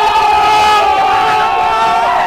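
A group of people screaming together in one long, loud, held yell.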